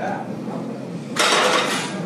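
Loaded barbell set down at the end of a set of curls: a loud clatter of the weight plates and bar, starting about a second in and lasting under a second.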